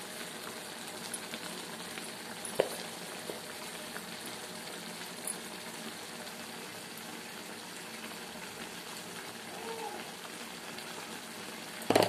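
Ridge gourd and chana dal curry simmering in a pan on the stove, a steady bubbling sizzle. A single sharp click sounds about two and a half seconds in.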